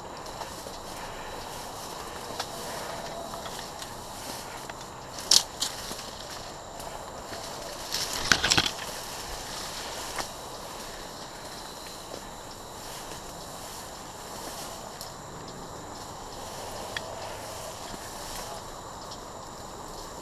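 Rustling and crunching of dry grass and brush underfoot as a player moves slowly through thick undergrowth. One sharp crack about five seconds in and a short cluster of sharp cracks around eight seconds stand out as the loudest sounds.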